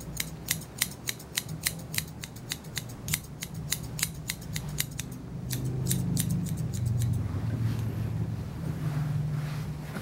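Grooming shears snipping a Yorkshire Terrier's face and chest hair in quick, steady cuts, about three to four snips a second, stopping about seven seconds in. A low hum runs underneath, louder in the second half.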